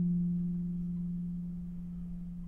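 Concert harp: a single low plucked note rings on and slowly dies away as a near-pure, steady tone.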